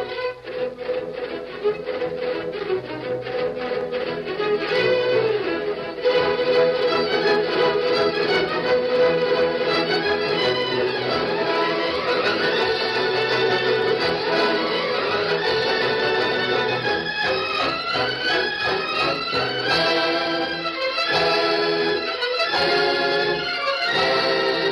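Orchestral music with strings to the fore, opening with fast repeated notes and moving into held notes with rising runs: the radio drama's closing music.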